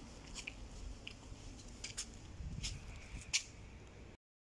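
Footsteps on gritty pavement: short, light crunching scuffs at about a walking pace, over a quiet low background hum.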